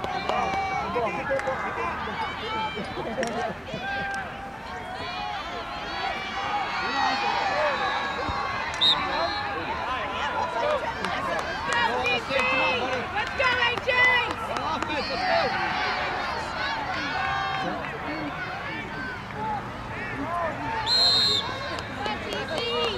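Many overlapping voices of spectators and players calling out on an outdoor field, a steady mix of sideline chatter and shouts. A brief high-pitched sound cuts through near the end.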